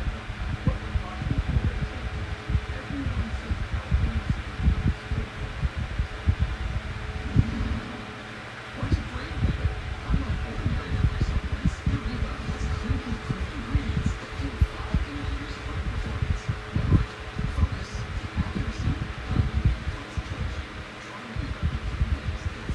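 Comfort Zone 8-inch high-velocity fan running: a steady rush of air with a faint motor hum. Its airstream buffets the microphone in irregular low gusts that ease off briefly twice.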